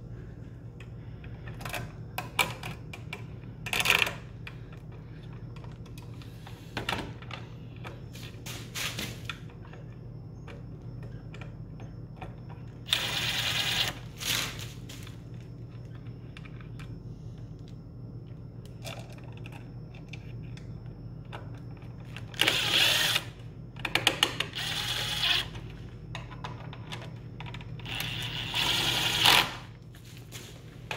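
Cordless drill driving the receptacle's mounting screws into a plastic electrical box in short runs of about a second each, four times, with small handling clicks between.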